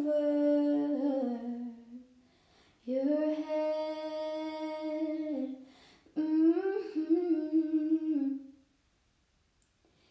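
A woman humming a slow melody without accompaniment, in three long, held phrases, with a pause near the end.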